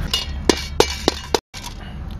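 Metal clinking against a stainless steel bowl: four sharp clinks about a third of a second apart, each ringing briefly. The sound then drops out for a moment.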